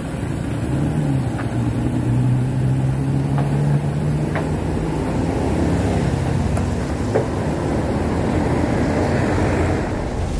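A motor vehicle's engine running steadily close by, its hum rising about a second in and holding, over road and wind noise with a few faint ticks.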